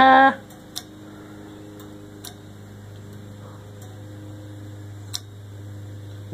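A short laugh, then a steady low hum with a few faint ticks scattered through it.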